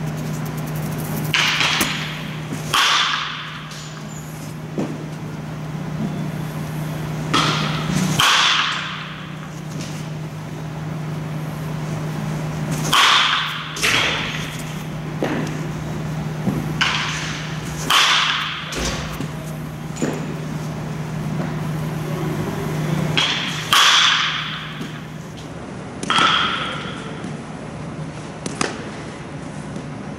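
Baseball bat hitting pitched balls during batting practice in a large indoor hall: a sharp crack about every five seconds, each followed about a second later by a second impact, both echoing, over a steady low hum.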